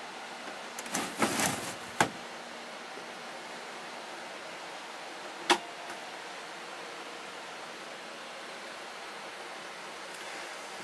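A plastic tambour roller door on an overhead locker sliding shut with a short rattle, ending in a sharp click about two seconds in. A single sharp knock follows a few seconds later, over a steady background hiss.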